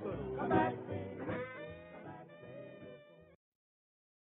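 The ending of a 1950s vocal-group R&B record: the band fades down and closes on a last held note that stops about three and a half seconds in, then silence.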